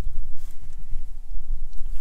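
Wind buffeting the microphone: an uneven low rumble with a couple of faint clicks.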